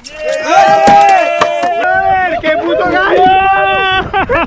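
Excited shouting from men on a fishing boat while a fish is being fought: long drawn-out wordless exclamations with voices overlapping, and a few sharp clicks in the first couple of seconds.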